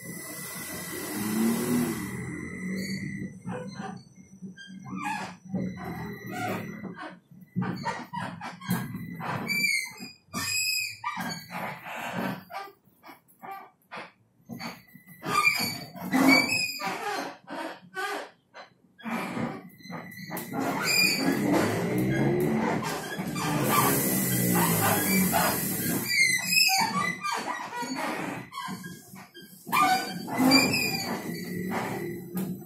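Inside a TrolZa-62052 trolleybus on the move: the electric traction drive whines, with several tones sweeping up and down together as it pulls away. Short squeals and knocks come from the body.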